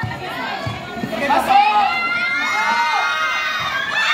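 Crowd of spectators shouting and cheering, with many high voices overlapping. It grows a little louder about a second and a half in.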